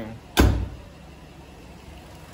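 A car door, that of a Mercury Grand Marquis, shutting once with a single heavy thud about half a second in.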